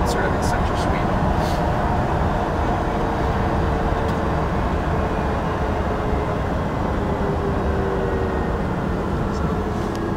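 Steady road and tyre noise inside the cabin of the Lucid Air alpha prototype electric sedan while it drives, with a faint steady whine underneath.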